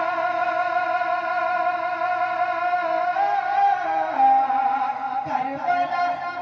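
A young man's voice singing a naat through a microphone, holding one long steady note for about three seconds, then moving on through a few more drawn-out notes.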